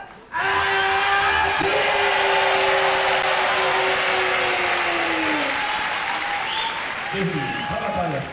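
A ring announcer calls a fighter's name over the arena PA, stretching it into one long note that falls in pitch about five seconds in. A crowd applauds under it throughout.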